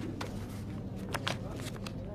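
Paper handling: a file of sheets being shuffled and flicked, giving several short crisp rustles at irregular moments, over a low steady room hum.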